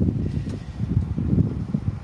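Wind buffeting the phone's microphone: a low, uneven rumble that drops away near the end.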